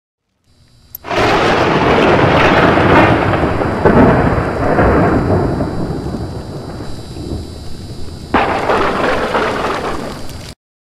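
Thunder with rain, as a sound effect: a thunderclap just after a second in, then rumbling that swells again about four seconds in and slowly dies away, and a second sudden clap about eight seconds in.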